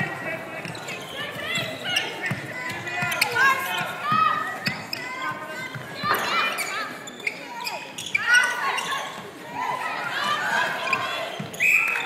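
Netball being played on an indoor hardwood court: shoes squeaking on the floor and the ball thudding as it is passed and caught, with players' and spectators' voices echoing in the hall. A short umpire's whistle blast sounds right at the end.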